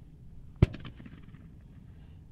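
A single sharp gunshot about half a second in, followed by a brief trailing echo. It is the shot that marks a thrown bird for a retriever on a land single.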